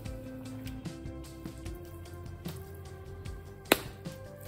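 Background music with sustained notes, and one sharp click near the end.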